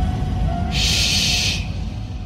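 Deep bass rumble from dancehall sound-system playback, with a burst of hissing noise about a second long starting under a second in.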